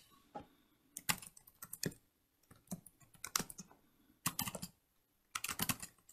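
Computer keyboard typing in short, irregular bursts of keystrokes, with brief pauses between bursts.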